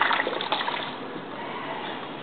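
Water poured from a plastic bottle into a plastic jug, splashing and trickling, fading off after about a second.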